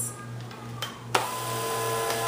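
Bissell Perfect Sweep Turbo rechargeable sweeper switched on with a click about a second in. Its brush-roll motor then runs with a steady whine, the brush roll and corner brushes spinning free with the sweeper held upside down off the floor.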